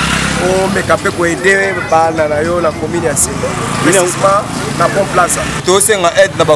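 A man talking in the street, over a steady low drone of vehicle engines.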